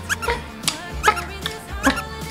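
A sun conure giving several short, squeaky rising chirps over background music.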